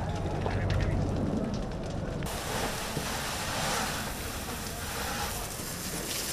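Outdoor wildfire sound: burning wood crackling with scattered snaps over a low rumble. About two seconds in the sound cuts to a steady rushing hiss, with voices faint in the background.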